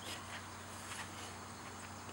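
Quiet background with a faint steady low hum and hiss. The test-stand engine is stopped.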